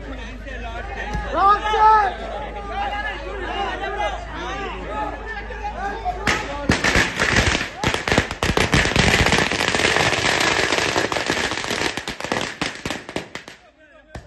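Crowd voices, then about six seconds in a string of firecrackers goes off: a rapid, dense run of sharp cracks lasting about seven seconds that stops abruptly near the end.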